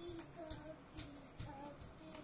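Crisp ginger snap cookie being bitten and chewed: several sharp crunches about half a second apart, over a faint tune.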